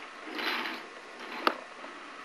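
Wooden toy train and track pieces being handled: a short scraping rattle, then one sharp click about one and a half seconds in.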